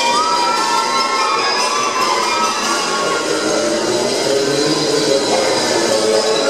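Young spectators cheering and shouting over the synchronized swimming routine's music, with long held whoops in the first couple of seconds.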